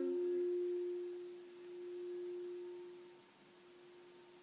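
Heart-chakra crystal singing bowl of frosted quartz ringing out with one pure, steady tone that swells once and dies away over about three seconds. A hummed voice stops in the first half-second.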